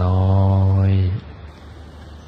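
A man's voice drawing out one word in a long, even, chant-like tone while guiding meditation; it stops just after a second in, leaving a quiet pause.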